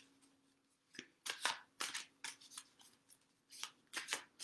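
Tarot cards being shuffled by hand: an irregular run of short, quick card snaps and rustles starting about a second in.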